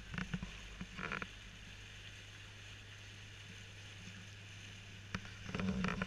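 Open canal tour boat's motor running with a steady low hum as the boat cruises along the canal. Short bits of voice come about a second in and again near the end.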